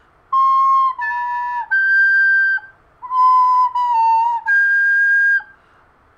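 Plastic recorder playing a three-note phrase twice. In each phrase the first two notes sound clean, and the last jumps to a shrill high squeak instead of the lower note. This is the squeak of air leaking past a finger that is not fully covering a hole.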